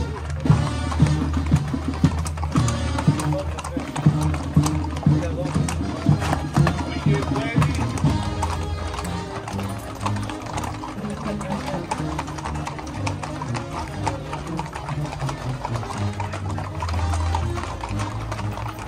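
Horses' hooves clip-clopping on a paved street as a group of riders walks past, the clicks densest in the first half. Music with a stepping bass line plays loudly under the hoofbeats.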